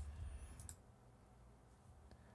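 A single soft click at the computer about two-thirds of a second in, with faint room tone around it and near silence after.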